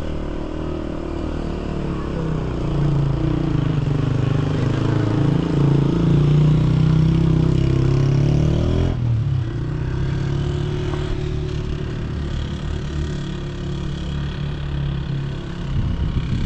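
A motor vehicle's engine running, its pitch climbing over the first several seconds and dropping abruptly about nine seconds in, then running steadily.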